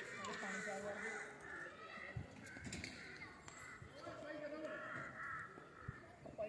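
Faint, distant voices of people talking in the background, with bird calls mixed in.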